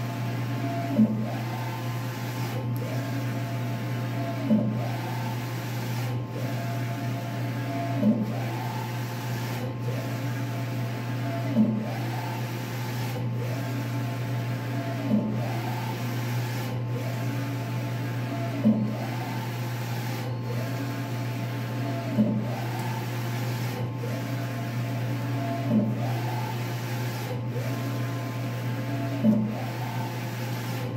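Wide-format inkjet printer with an XP600/DX11 printhead printing: the carriage motor whines up and down in pitch as the head sweeps across, with a sharp knock at the end of each pass about every three and a half seconds. A steady low hum runs underneath.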